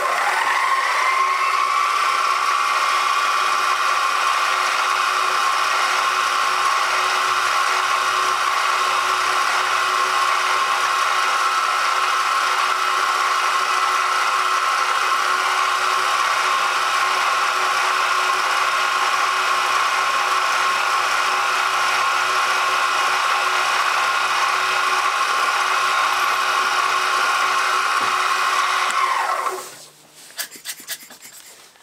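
Milling machine spindle motor starting with a rising whine, then running steadily while a drill bit bores into the plugged hole in a cast aluminium part. The motor winds down in pitch and stops just before the end.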